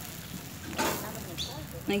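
Faint background voices, with one short burst of noise a little under a second in and a clear voice starting near the end.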